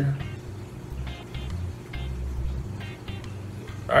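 Background music with a repeating bass line and light upper notes.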